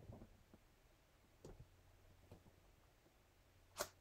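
Near silence: faint handling of a rubber stamp pressed onto foil cardstock, with a couple of soft ticks and one short click near the end as the stamp is lifted.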